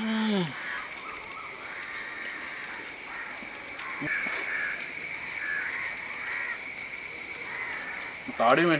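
Steady high-pitched insect drone, likely cicadas or crickets, which gets louder about four seconds in. It opens with a short, falling 'mmm' from a man tasting food.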